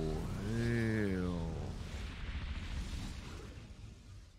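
A dragon's roar from a TV soundtrack: one long pitched call that rises and then falls away about a second and a half in, over the low rumble of a fire blast that slowly fades.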